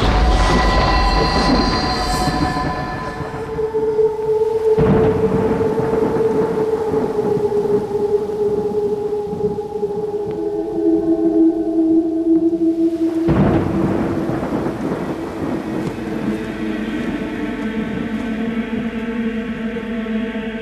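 Thunder: a loud clap right at the start, then two more rumbles about five and thirteen seconds in. Sustained, held notes of background music play underneath.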